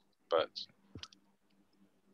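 A single spoken word, 'but', followed by a few faint short clicks and a pause in the talk.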